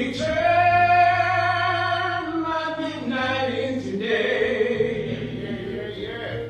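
A voice singing a slow song, with long held notes that waver with vibrato, into a microphone. A steady low accompanying note is held underneath.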